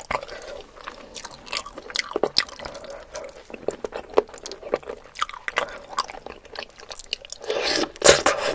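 Close-miked eating sounds: chewing with many short wet clicks and smacks from a mouthful of spicy, saucy noodles and chicken feet. Near the end comes a louder, longer wet sound as a sauce-covered chicken foot is bitten.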